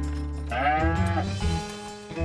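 A cartoon cow character gives one short bleat-like cry, rising and then falling in pitch, about half a second in. Strummed guitar background music plays under it.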